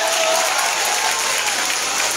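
Large crowd of spectators applauding, with voices in the crowd over the clapping.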